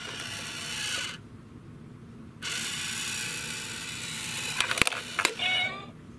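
Small electric motor and gears of a coin-grabbing cat piggy bank whirring as the toy cat's paw pulls the coin off the lid into the box: one short run in the first second, a longer run from about two and a half seconds in, then a few sharp clicks and a short call near the end.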